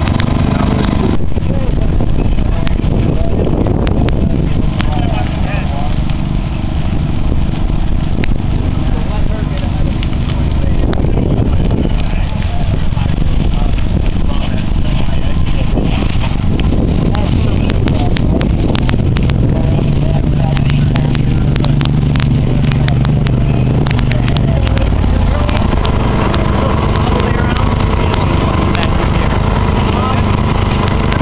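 Dry prairie grass burning in a prescribed burn under a heavy, steady rumble of wind on the microphone, with scattered sharp crackles. A steady low hum joins in for several seconds after the middle.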